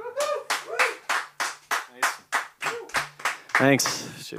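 Applause from a few people clapping steadily, about three to four claps a second, just after a song ends, with a short voiced cheer near the start and a man's voice near the end.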